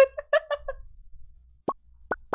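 A woman laughing hard in a run of short, high-pitched bursts that die away within the first second, followed after a pause by a single short plop near the end.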